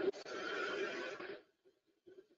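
Air hissing into the open end of an exhaust venturi valve's duct as a sheet-metal cap is fitted over it, with a light knock as the cap goes on. The hiss stops about one and a half seconds in, once the cap closes off the airflow.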